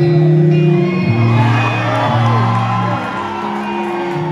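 A live emo rock band plays the instrumental opening of a song on electric guitars and bass, the bass moving between long held notes, while the crowd whoops and shouts.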